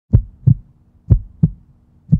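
Heartbeat sound effect: low double thumps, lub-dub, about one beat a second, two beats in all, over a faint steady hum.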